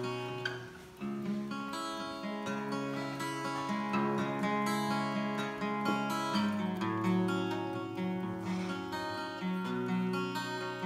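Solo acoustic guitar playing the instrumental introduction to a folk lullaby, with picked chords and a brief break just before one second in.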